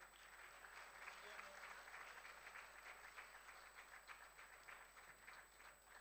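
Faint applause from an audience, many hands clapping together, thinning out to a few separate claps near the end.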